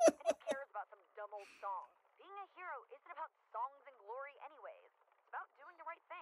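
Speech only: the animated episode's dialogue playing quietly, a girl's voice speaking.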